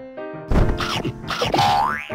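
Cartoon sound effects over light children's background music: about half a second in comes a loud, noisy burst with springy boing-like rising glides, the last glide climbing up near the end.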